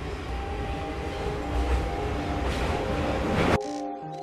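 Subway train rumbling and hissing as it runs, growing louder, then cutting off suddenly about three and a half seconds in; soft pitched music notes follow near the end.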